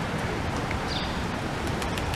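City street ambience: a steady wash of traffic noise.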